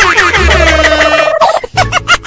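Loud comic sound effect of warbling, wavering gobble-like calls over a steady low hum, dropping out briefly near the end.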